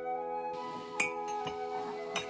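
Background music with a slow, held melody, over ceramic mugs clinking together as one is taken from a cupboard shelf: a sharp clink about halfway through, then a lighter one shortly after.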